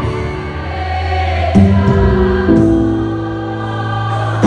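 Live gospel worship music: a church band led by keyboard, with a choir singing over sustained chords. The chord changes twice, about a second and a half in and again just past halfway.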